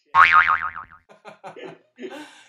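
A comedic "boing" sound effect, a loud pitched tone wobbling up and down for under a second, dubbed over a spoken curse word to bleep it out. Brief laughter follows.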